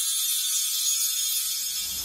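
Logo-intro sound effect: a high, glittering shimmer of many sustained high tones with a fine rattling texture, joined by a low rumble that fades in about a second in and builds toward a whoosh.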